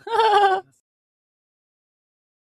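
A woman's short, wavering laugh, lasting well under a second, close on a headset microphone.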